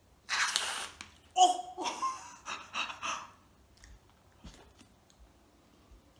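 A whipped-cream aerosol can sprays in one short hiss about half a second long. Then a person's voice makes brief wordless sounds for about two seconds.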